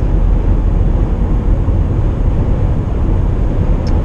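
Steady in-cabin drone of a Mitsubishi Outlander PHEV at highway speed: tyre and wind noise with the petrol engine running, warming up while it drives the generator in series mode.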